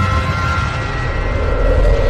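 Cinematic logo-intro sound effect: a deep, steady rumble under ringing tones that fade away in the first second, then a swelling whoosh near the end.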